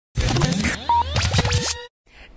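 Short radio-show intro sting: music with record-scratch effects and rising and falling pitch sweeps, cutting off suddenly near the end.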